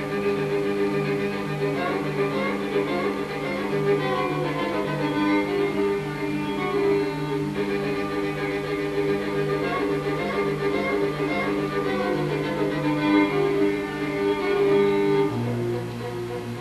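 Background music played on bowed strings, with a bass line that steps between notes and settles on a lower held note near the end.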